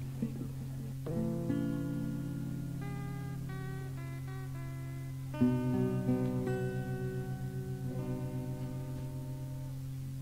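Acoustic guitar music: one chord strummed about a second in and another at about five and a half seconds, each left ringing while single notes change above it, over a steady low tone.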